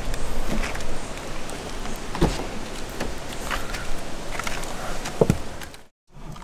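A car door being opened and someone getting into a Mini Electric hatch: footsteps and handling noise, with two sharp knocks, about two seconds in and about five seconds in. The sound cuts off suddenly just before the end.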